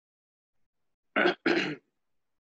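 A person clearing their throat with two short coughs, about a second in, the second a little longer than the first.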